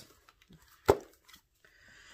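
A single sharp tap about a second in as a spiral-bound planner is handled and raised, followed by a faint paper rustle near the end.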